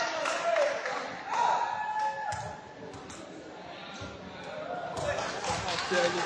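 Voices calling out in a large sports hall between rallies, with a few sharp knocks. The middle stretch is quieter.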